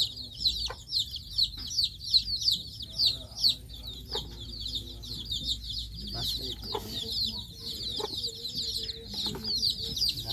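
A dense chorus of small birds chirping: many quick, high, falling chirps a second, with no break. Scattered short clicks and some lower calls come through underneath in the second half.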